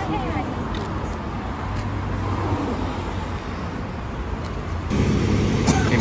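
Street traffic noise with a motor vehicle engine running close by, its low rumble growing louder about five seconds in.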